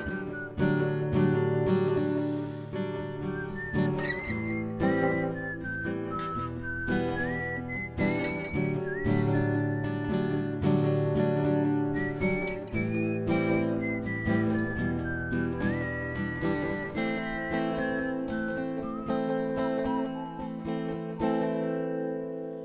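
Acoustic guitar strummed, with a whistled melody over it that rises and falls in short phrases.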